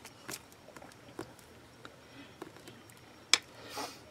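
Faint taps and handling noises of hands pressing and picking up a block of polymer clay cane on a work surface, with one sharper click a little past three seconds in.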